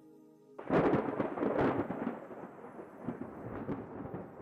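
A thunderclap: a sudden crack about half a second in that rolls on and slowly fades. Soft background music tones just before it.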